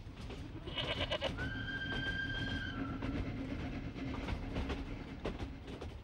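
Railway carriage rumbling steadily with a faint clickety-clack over the rails, and a goat bleating in one long, steady call from about a second in.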